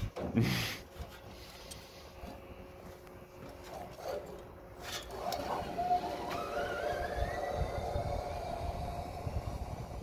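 A trolley pulley running along the rope-jump line: from about halfway through, a thin whine climbs steadily in pitch for several seconds as the rider picks up speed, over a low rush of wind.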